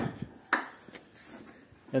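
Sharp metallic clicks from a Mercedes CLS hood and its hinge being handled: one at the very start, a stronger one about half a second in, and a lighter one a moment later, then faint handling noise.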